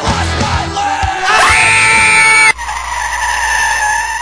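Loud music with a voice yelling over it; the sound changes abruptly about two and a half seconds in.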